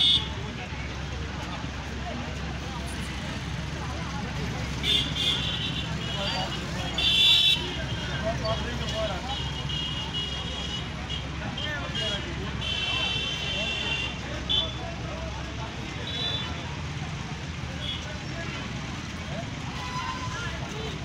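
Busy street with crowd chatter and a steady rumble of idling engines, cut by several short, high-pitched vehicle horn toots, the loudest about a third of the way through.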